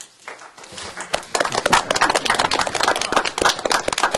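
Applause from the room: a spread of hand claps that starts about a second in and quickly grows into dense, loud clapping.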